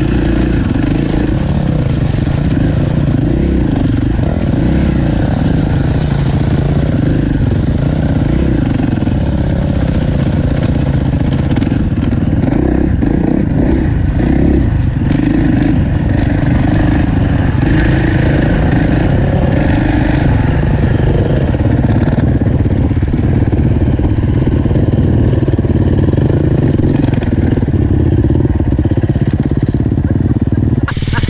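KTM four-stroke dirt bike engine running under load as it is ridden over a rough, muddy track, its note rising and falling with the throttle, heard loud and close from the bike itself.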